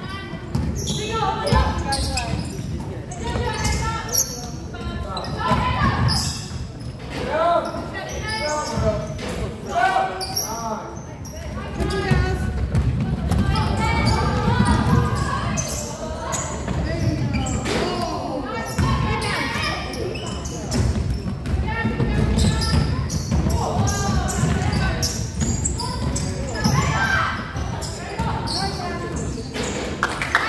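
A basketball bouncing on a hardwood gym floor again and again as players dribble, with indistinct players' calls and voices echoing in a large hall.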